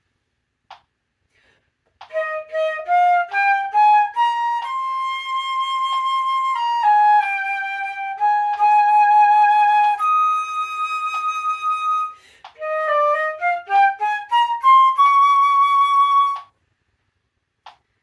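Concert flute playing a short étude passage plainly, without its trill and grace notes. It comes in two phrases, each a quick rising run of short notes leading into long held notes.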